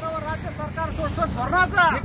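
A group of men chanting protest slogans together, voices overlapping, over a low background rumble.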